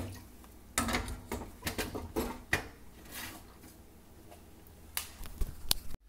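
Handling noise of a phone being fumbled and gripped: irregular clicks, knocks and rubs, quiet in between.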